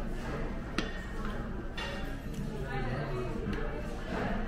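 Restaurant dining-room background of indistinct voices from other diners, with a single sharp click about a second in.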